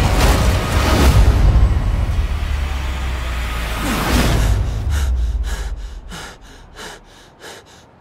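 A loud swell of cinematic sound effects, with a deep rumble and whooshes, fades out about five seconds in. A person then pants in short, quick breaths, about three a second.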